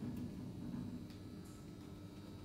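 Faint steady low hum of an Oakland passenger lift car running down between floors.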